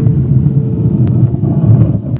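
A loud, rough low rumble lasting about two seconds that cuts off abruptly near the end, with a faint held note of background music underneath.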